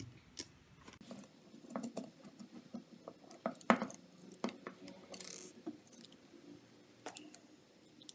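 Small clicks, taps and scrapes of hands fastening screws and nuts on a metal robot chassis. The sharpest knock comes about three and a half seconds in, and a short hissing scrape follows just after five seconds.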